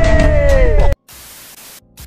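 Loud audio with a long held tone that drops in pitch cuts off sharply about a second in. A steady hiss of TV static follows, a glitch-style transition sound effect.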